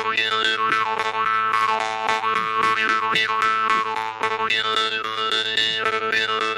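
Jew's harp played solo: a steady drone with the tune picked out in the overtones above it, plucked quickly and evenly.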